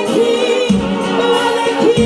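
Gospel singing with instrumental backing: a woman leads and other voices join in, over steady low notes from the band.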